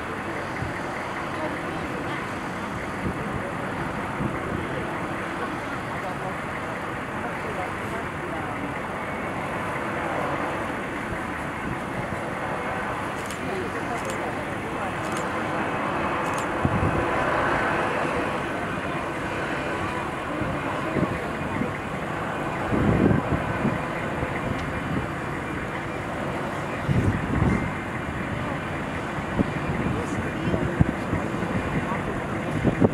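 Boeing 757 (C-32A) jet engines running at taxi speed, a steady rush that swells and brightens for a few seconds in the middle as the plane rolls past. A few short low thumps come in the second half.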